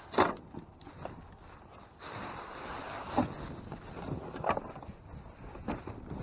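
Rummaging through dumpster contents: plastic and bubble wrap rustle, with a few sharp knocks of boxes and crates. The loudest knock comes right at the start.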